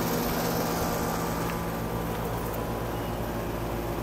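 A steady mechanical hum with several low tones holding level throughout, as from a running motor or engine.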